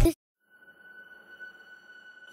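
A faint, steady high-pitched tone with a ringing, sonar-like quality, part of an edited-in transition sound effect, fading in about half a second in after the speech cuts off.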